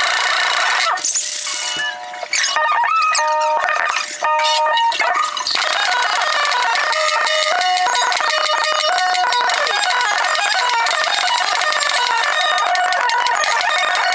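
Live rock band with drums, played back many times faster than real speed, so it sounds high-pitched and chirpy with little bass. About two seconds in, the wash thins briefly to short stepping notes before the full band returns.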